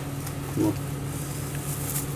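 Steady low machine hum, with one short spoken word about half a second in.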